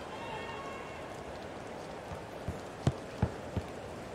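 Steady murmur of a stadium crowd, with four quick sharp knocks a little past halfway, about a third of a second apart, like a tennis player's shoes striking a hard court while running.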